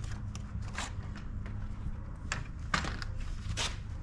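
Plastic front grille panel of a Ford Bronco being pulled free of its clips: several sharp clicks and cracks of plastic clips and panel edges giving way, spread over a few seconds, over a low steady hum.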